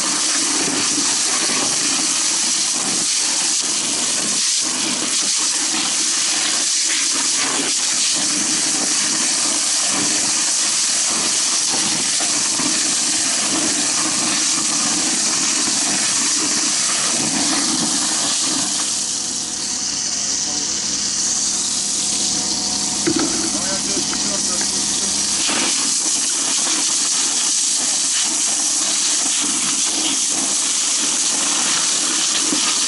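Fire hose nozzle spraying water inside a burning house: a loud, steady hiss of the jet. The hiss eases for several seconds about two-thirds of the way through, then comes back.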